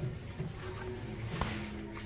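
Background music with steady held notes, and a single faint click about one and a half seconds in.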